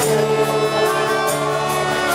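Live worship music: a small band with acoustic guitar accompanying a congregation singing a worship song, over a steady beat.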